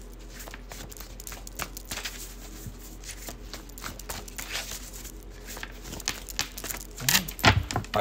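A deck of tarot cards being shuffled by hand: a steady run of quick card flicks and clicks, with a few louder knocks near the end.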